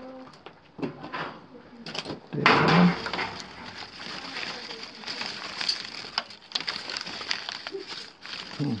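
Old newspaper being picked up and pulled open by hand, crinkling and rustling. It starts about two and a half seconds in with its loudest crackle and goes on as a run of irregular paper crackles.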